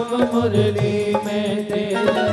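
Hindu devotional chanting in kirtan style: a sung chant with music behind it and tabla strokes.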